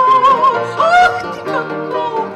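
A woman singing a held note with vibrato into a microphone, stepping up to a higher note about a second in, accompanied by acoustic guitar.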